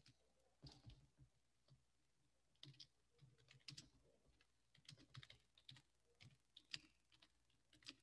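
Faint typing on a computer keyboard: irregular runs of key clicks with short pauses between them.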